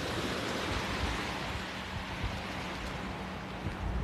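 Small waves washing up onto the sand as a steady hiss, with a faint steady low hum underneath.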